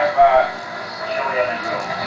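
Indistinct voices of men talking in a small room, the words not made out.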